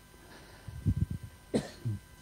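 A man clearing his throat and coughing a few times into a handheld microphone, in short bursts through the second half.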